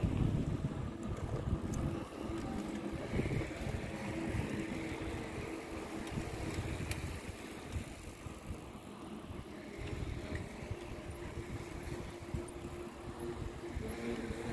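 A line of bicycles rolling past on an asphalt road, with wind rumbling unevenly on the microphone.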